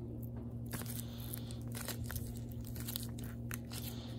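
Rigid clear plastic trading-card holders clicking and scraping against one another as a stack is thumbed through by hand: a run of small, irregular ticks over a steady low hum.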